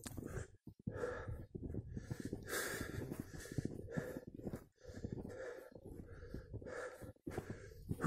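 A man panting hard as he climbs, quick heavy breaths a little more than one a second. The breathing is labored from exertion at high altitude.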